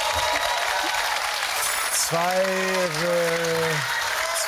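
Studio audience applauding throughout, joined about halfway in by one long, held vocal call that dips slightly in pitch before it stops near the end.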